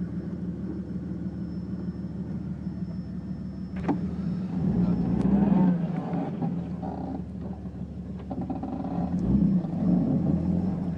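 Off-road 4x4's engine droning, heard from inside the cab while driving on sand, pulling harder about five seconds in and again near the end. A sharp knock sounds a little before the first surge.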